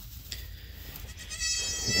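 A young goat kid bleating: one high-pitched bleat that starts about a second and a half in and is still sounding at the end.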